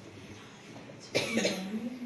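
A person coughing once, sharply, about a second in, running straight into a short voiced sound.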